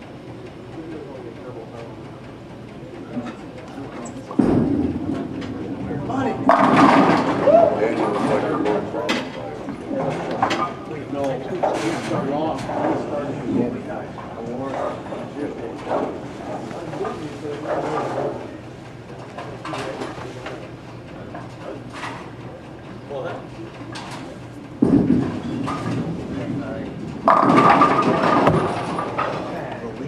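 Bowling alley din: bowling balls rolling and pins clattering on the lanes, with thuds about four seconds in and again near the end, over people talking.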